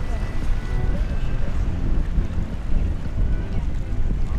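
Wind buffeting the microphone, a steady low rumble, with faint voices of beachgoers in the distance.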